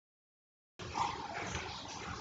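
Silence, then a little under a second in, faint background noise from the recording cuts in suddenly: low room noise with a few indistinct faint sounds in it.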